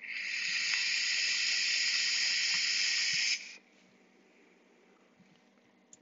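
Vape atomizer drawn on through its airflow holes: one even hiss of air through the firing coil lasting about three and a half seconds, then stopping abruptly.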